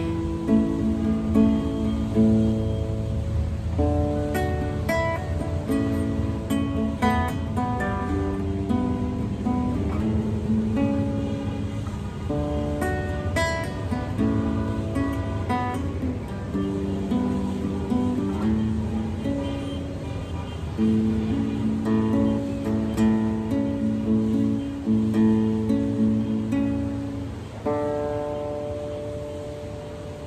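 Nylon-string classical guitar played solo, picking and strumming chord patterns, finishing on a long held note near the end.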